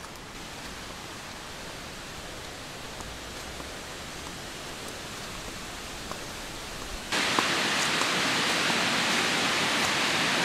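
Steady rushing of river water running over rocks, fainter at first and abruptly louder from about seven seconds in.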